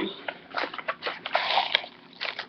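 Cardboard carton being handled as a bottle is slid out of it: irregular rustling and scraping.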